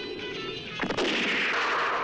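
Music trailing off, then just under a second in a sudden bang and a loud, continuous noise of gunfire and explosions from a film battle scene.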